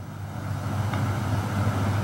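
Steady low hum with even background noise from a radio-studio microphone, slowly growing louder.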